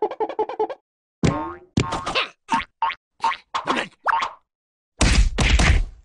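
Cartoon sound effects and wordless character vocal sounds. A quick rattling trill comes first, then a string of short sounds whose pitch slides up and down, and a louder noisy rush about five seconds in.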